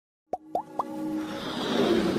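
Synthetic logo-intro sound effect: three quick rising bloops about a quarter second apart, followed by a swelling whoosh that builds steadily louder.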